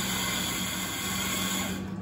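Electric espresso grinder's motor running as it grinds coffee into a portafilter basket: a steady whir that cuts off just before the end.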